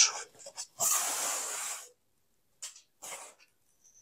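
A person breathing out hard once, a hiss of about a second that fades away, followed by two brief faint sounds.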